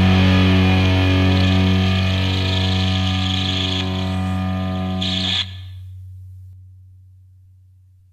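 Final distorted electric guitar chord ringing out and slowly decaying, played on a Yamaha Pacifica's bridge humbucker through a Boss DS-1 distortion pedal and a Marshall amp emulation. About five and a half seconds in, the upper notes cut off abruptly, leaving a low note that fades away.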